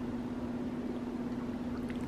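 A steady low hum with faint background hiss: room tone, with no other distinct sound.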